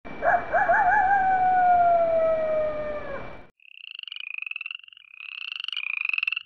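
A single long wolf howl over a steady hiss, wavering at first and then slowly falling in pitch, cut off about three and a half seconds in. Frogs trilling follow, in short repeated pulsed calls.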